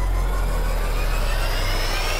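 Intro sound effect for the logo animation: a whoosh that climbs steadily in pitch over a steady deep bass rumble.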